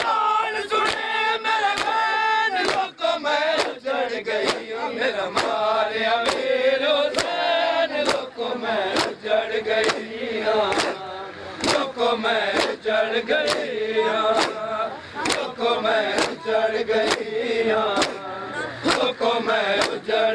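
A crowd of men chanting a noha lament in unison, with rhythmic matam: open hands slapping bare chests together, about one and a half strikes a second.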